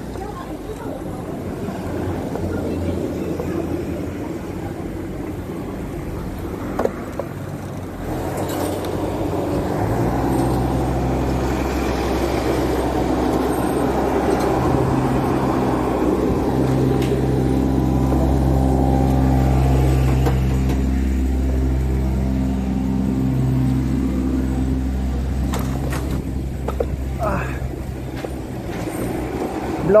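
Small engine of a ride-on lawn mower running at a steady speed, coming in about a third of the way through, loudest just past the middle and fading near the end.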